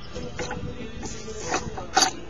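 Handling noise from a small mini-bike frame being tipped up onto its rear, with light rattles and one sharp knock near the end.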